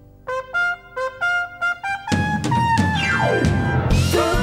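A live band's horn section, trumpet with saxophones, plays a few short staccato notes, then the full band comes in loud about halfway, with a falling run near the end.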